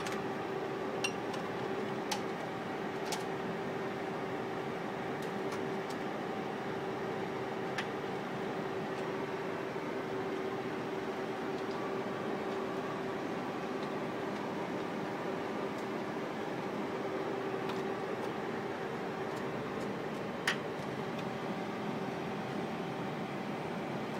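Steady mechanical hum with one constant held tone from running equipment in a cinema projection room. A few light clicks come from hands working the film path of a 35mm projector during lacing.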